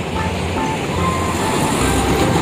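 Road traffic noise: a light diesel dump truck approaching close by, its engine and tyres growing gradually louder.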